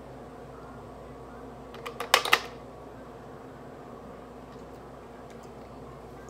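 A short burst of plastic clacks and ice clinks about two seconds in, as a plastic blender cup full of ice and the piña colada mix container are handled, over a steady low room hum with a few faint ticks later.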